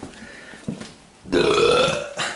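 A person burping once: a single loud, low belch starting about a second and a half in and lasting under a second.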